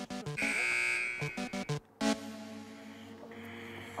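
Edited-in background music of short, bouncy plucked notes, with a held buzzing electronic tone over it from about half a second in to just past a second. After a brief drop to near silence at about two seconds, a held chord takes over and slowly fades.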